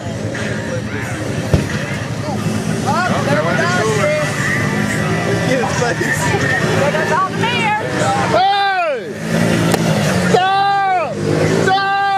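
Can-Am Commander 1000 side-by-side's V-twin engine running steadily as it drives through mud. Loud, long whooping yells rise and fall in pitch over it several times, the loudest in the second half.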